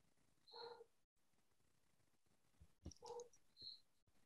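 Near silence, with two faint, brief pitched sounds, one about half a second in and one about three seconds in, and a faint click just before the second.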